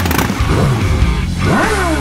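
Small dirt bike engine revving over background music, with a rev that climbs and then falls away near the end.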